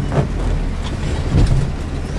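A four-wheel-drive vehicle's engine runs at low speed, heard from inside the cabin as it crawls over rocks. There are two thuds from the vehicle jolting, one about a quarter second in and a louder one about a second and a half in.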